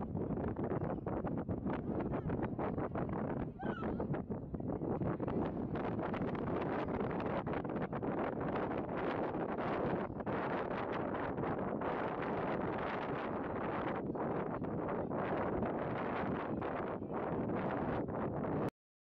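Wind buffeting the microphone, mixed with the indistinct chatter of a large group of people.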